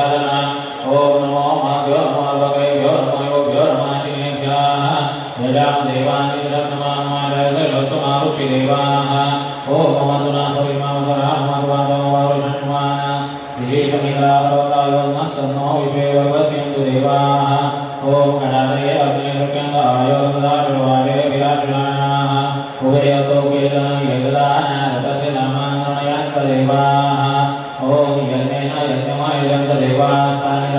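Low voices chanting a Hindu devotional mantra together in a steady unbroken drone of phrases, with brief dips for breath every few seconds.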